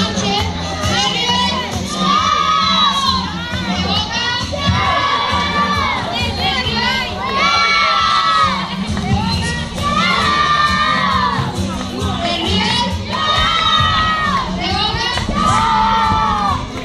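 A crowd of children shouting and cheering together in repeated calls that rise and fall, one about every two and a half seconds.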